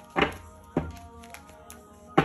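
Two dull thunks about half a second apart, over quiet background music.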